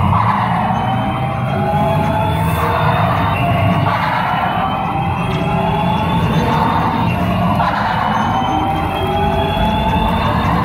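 Buzz Lightyear dark ride's soundtrack: music with slowly rising electronic tones that repeat every few seconds over a steady low rumble.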